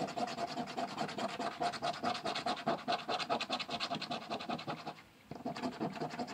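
A penny scraping the coating off the play area of a lottery scratch-off ticket in rapid back-and-forth strokes, with a brief pause about five seconds in.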